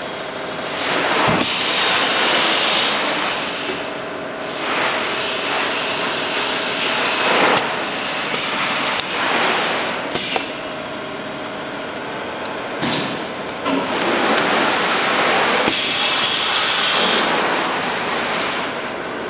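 T-shirt printing shop machinery running with a loud, hissing rush that swells and drops every second or few.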